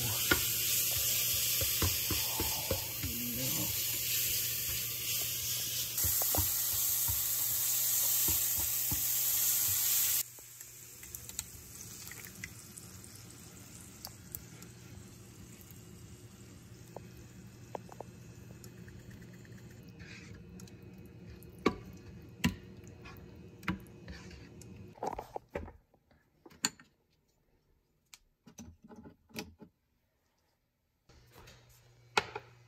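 Ground beef frying in a skillet, sizzling loudly and steadily for about ten seconds until it cuts off abruptly. After that come quieter kitchen sounds: scattered clicks and knocks of utensils and pans as tomato sauce goes over the meat. Near the end it falls almost silent apart from a few clicks.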